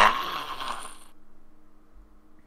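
A person's breathy, disgusted exhale or laugh that trails off within the first second, followed by a faint steady electrical hum.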